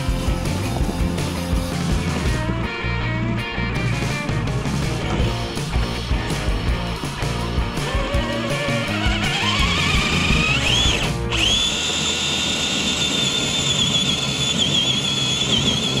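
Rock music with a beat. A rising whine climbs in under it and, once the music stops about eleven seconds in, holds as a steady high-pitched whine with a slight waver: the electric motor of a radio-controlled scale crawler running at high revs.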